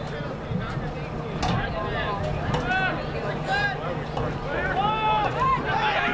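Players and spectators shouting across a rugby field, a string of short raised calls from about a second and a half in, over a steady low hum.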